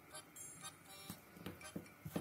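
A faint test tune played through a Doro 8035 smartphone's earpiece for the in-call volume check, with a few light handling clicks.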